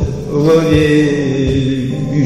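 A voice singing or chanting a long, drawn-out phrase over musical accompaniment, with a soft low beat about every three quarters of a second.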